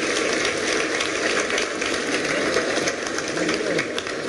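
A conference audience applauding: a dense, steady crackle of many hands clapping through the whole pause.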